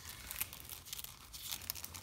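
Paper pages of a thick, embellished junk journal being turned by hand: a rustling, crinkling run of many small crackles as the stiff pages and tucked-in papers rub and flip over.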